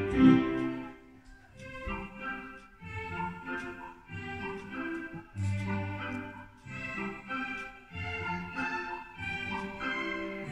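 Yamaha Electone two-manual electronic organ played by a young child: a simple melody on the upper keyboard over bass notes on the lower keyboard, in short phrases with brief gaps between them.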